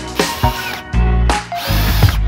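Cordless drill driver running up and slowing, driving a screw through a steel corner bracket into a timber frame, its whine near the end, over background music with a steady beat.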